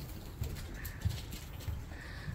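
Footsteps and small handling knocks from walking with a handheld camera, soft low thumps at an uneven pace over a faint room hum.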